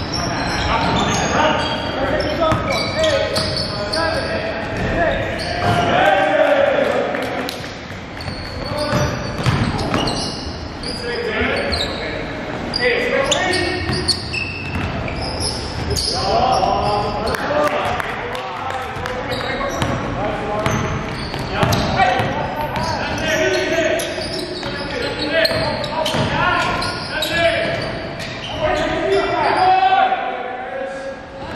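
A basketball bouncing repeatedly on a wooden gym floor during play, with players' voices calling out, echoing in a large gym.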